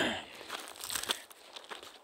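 Footsteps crunching and crackling over dry pine needles and pine cones, an irregular run of small crackles.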